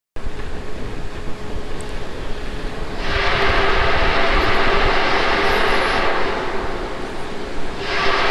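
A steady rushing hiss from a Falcon 9 rocket venting propellant vapour on the launch pad, with a faint steady hum under it. It cuts in sharply, swells louder for a few seconds midway, then eases again.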